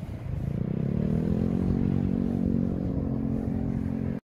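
An engine speeding up, its pitch rising over the first second or so, then running steady.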